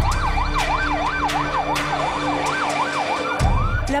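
Emergency-vehicle siren in a fast yelp, its pitch rising and falling about two and a half times a second, over a low rumble. It cuts off near the end as a voice begins.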